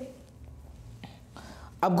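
A man's speaking voice pausing for about a second and a half, leaving only a low steady hum and a faint soft hiss, then starting again near the end.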